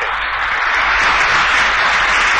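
Applause from a roomful of people, swelling toward the middle, greeting the successful ignition of the rocket's third stage.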